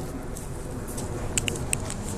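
Steady low rumble of wind and handling noise on a body-worn camera as its wearer moves, with a few short high chirps about a second and a half in.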